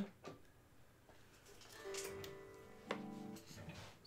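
Electric guitar picked softly: a note about two seconds in, then a second plucked note about a second later, both left to ring.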